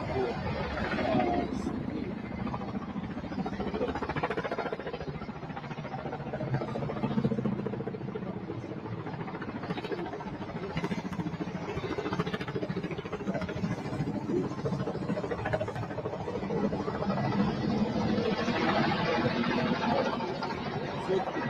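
Steady vehicle and traffic noise with indistinct voices mixed in.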